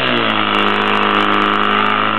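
Portable fire-pump engine running at high revs: its pitch finishes climbing in the first moments, then holds steady and loud.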